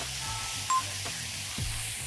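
Chopped vegetables and osobuco frying in a disco pan over a high gas flame: a steady sizzle. A few short beeping tones of background music come near the start.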